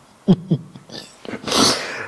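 A man's stifled laughter: two short chuckles about a third and half a second in, then a long breathy exhale near the end.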